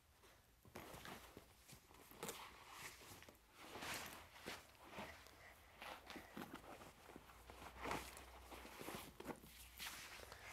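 Faint rustling and soft knocks of a heavy school backpack (about 17 pounds) being lifted off the floor and heaved onto a child's shoulders, with shuffling feet.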